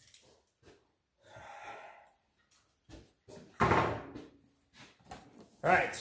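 Cardboard box and foam packing blocks being handled: faint rubbing and rustling, with one loud knock and scrape about three and a half seconds in.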